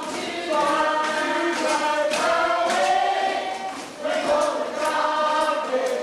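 A group of voices singing together, a cast chorus in a stage musical, in sung phrases of about two seconds with short breaks between them.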